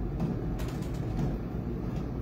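Steady low hum of a running air fryer's fan, with a few faint crinkles from the comic's plastic sleeve being handled.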